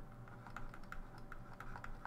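Faint, irregular clicks and taps of a stylus on a pen tablet while a word is handwritten.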